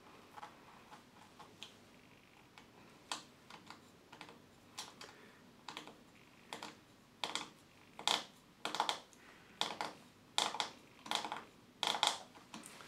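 Small sharp clicks of a T5 Torx screwdriver tip slipping in the rounded-off heads of tiny phone screws, sparse at first and then about one or two a second: the stripped heads give the bit no grip and it just spins.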